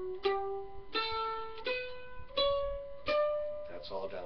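Mandolin picked one note at a time, climbing the D major scale across the D and A strings. There are about six notes, each a step higher and ringing until the next is picked.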